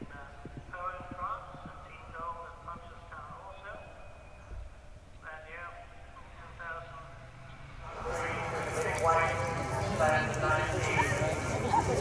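Galloping horse's hoofbeats on turf, faint under background voices; about eight seconds in, nearby voices become much louder.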